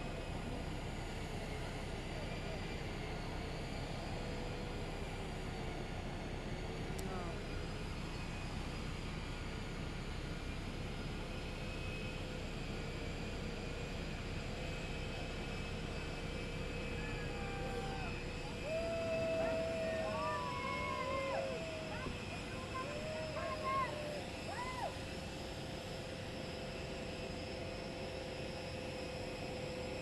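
Jet aircraft on the apron idling, a steady rumble under several steady whining tones. Distant voices call out briefly about two-thirds of the way through.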